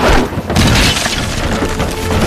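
A whip lashing into a wooden rack of herb-drying trays and smashing it: a sudden crash, a second hit about half a second in, then a continuing clatter of breaking wood and falling trays.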